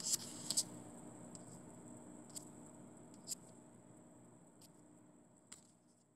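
A few faint, isolated clicks over a low steady hum, fading out toward the end.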